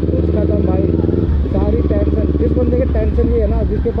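Kawasaki Ninja ZX-10R's inline-four engine running steadily at low revs as the bike rolls slowly, its note shifting about a second in. A man's voice comes over the engine in the second half.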